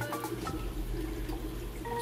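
Coral Box protein skimmer newly started in a reef-tank sump: a steady low pump hum under faint trickling and bubbling water.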